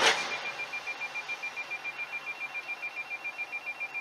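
A short bang right at the start, then a rapid high-pitched electronic beeping, about seven beeps a second, that keeps on steadily over faint road noise.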